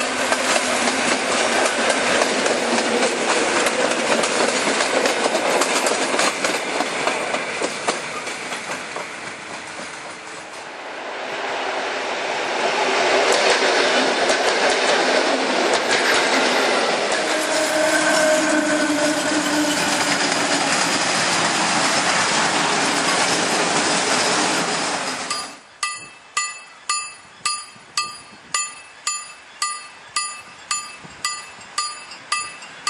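PKP EN57 electric multiple units passing close by at speed, wheels knocking over the rail joints; the noise dips near ten seconds before a second train passes. About 25 seconds in the sound cuts to a level-crossing warning bell ringing about twice a second.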